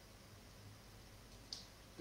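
Near silence: room tone with a faint low hum, and a single brief click about one and a half seconds in.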